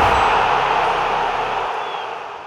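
Intro sound effect for a channel logo: a loud rush of static-like noise, centred in the middle range, that slowly fades away.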